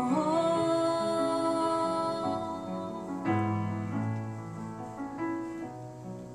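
Live solo grand piano with a female voice: a sung note is held over the piano for the first two seconds or so, then the piano plays on alone, with a new chord struck about three seconds in.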